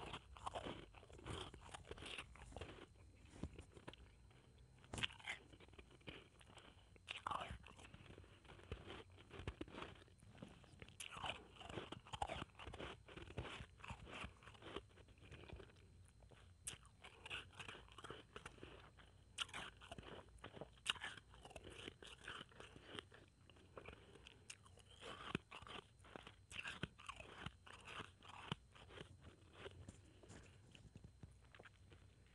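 Blended ice being crunched and chewed close to the microphone: a steady run of crisp, irregular crunches.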